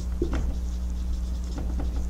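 Dry-erase marker writing on a whiteboard: a series of short squeaky, scratchy strokes, over a steady low hum.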